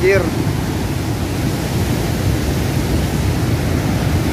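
Cold lahar from Semeru, a flood of muddy water carrying stones and wood, rushing past in a steady deep rushing noise.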